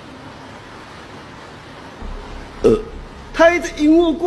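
Steady background hiss, then a short sound that drops in pitch about two and a half seconds in, followed by a person's voice calling out "hey" near the end.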